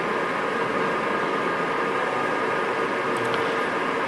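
Steady, even background noise with a faint constant hum: the room tone of a lecture hall.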